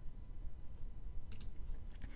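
Computer mouse button clicked: two sharp clicks in quick succession a little past halfway, over a faint hiss.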